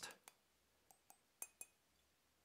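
Light finger taps on a ceramic photo mug: about five faint, short clinks spread over two seconds, some with a brief ring.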